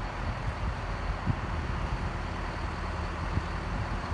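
Detroit Diesel 8V71 two-stroke V8 diesel of a GMC RTS bus idling steadily.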